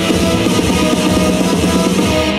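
Band playing an instrumental passage: guitar over a steady drum beat, with no singing.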